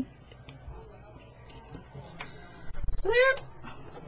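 A quiet room with faint handling ticks, broken about three seconds in by one short, high whine that rises in pitch.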